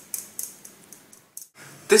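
A hand tapping a metal mesh sieve to shake flour through it: a run of light, quick taps, about four a second, that stops shortly before the end.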